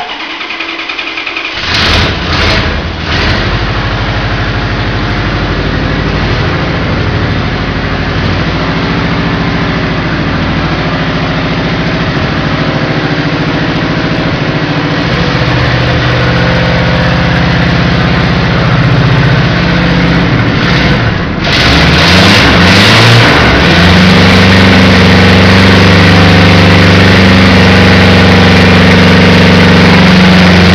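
A hot rod's engine is cranked and catches about two seconds in, is revved briefly a couple of times, then idles with its speed wandering up and down. For the last third it runs louder and steadier.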